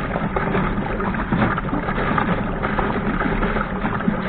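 Water rushing and splashing along a sailing dinghy's hull as it sails fast through choppy waves: a steady, noisy wash with no let-up.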